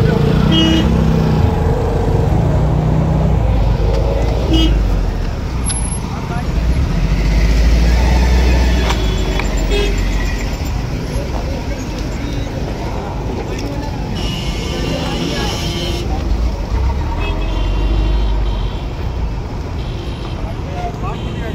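Road traffic with engines rumbling and car horns honking several times, over people's voices talking.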